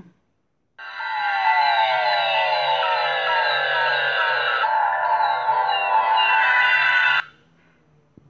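Synthesized intro music from a flying-logo animation playing back in the app's preview: many repeated falling sweeps over steady tones and a low hum. It starts about a second in and cuts off abruptly about a second before the end.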